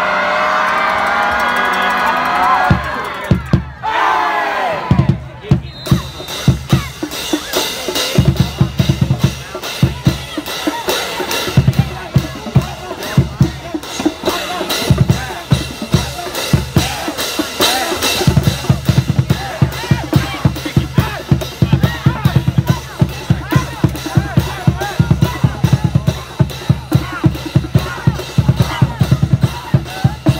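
A group of voices shouting together for the first few seconds, then a high school marching band in the stands playing: a drumline of bass drums and snares keeps a steady driving beat, with brass over it.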